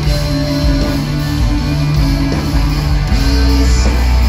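A rock band playing live, heard from the crowd: electric guitars over bass and drums, with no singing, in a passage of held guitar notes.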